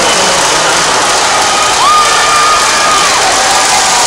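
A large crowd in an indoor sports arena, cheering and shouting in a dense, steady wash of noise. About two seconds in, a single high note rises, holds for about a second and falls away above the crowd.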